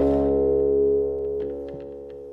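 La Diantenne 2.0, a self-built electronic instrument, sounding a sustained many-layered electronic tone. It starts with a brief noisy attack and fades slowly.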